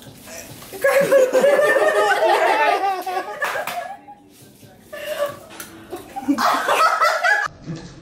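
Several young women laughing and giggling, in two stretches with a quieter lull between them.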